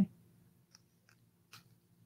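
Near silence broken by a few faint, light clicks as a small cardboard card of stud earrings is handled and flipped over.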